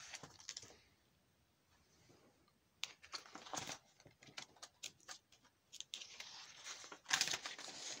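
Paper pages of a ring binder being turned by hand: faint rustling and small handling clicks, starting about three seconds in and busiest near the end.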